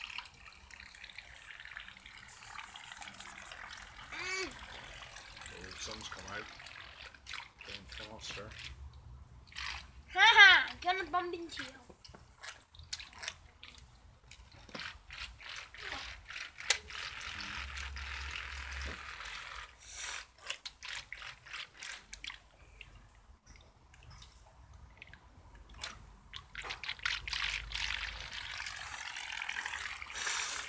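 Light splashing and trickling of water in an inflatable paddling pool as small toy boats churn across it, with scattered small clicks. A child's voice calls out briefly about ten seconds in.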